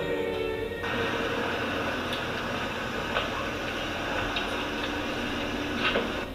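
Background music that, about a second in, gives way to a steady, even rushing noise with faint music still under it.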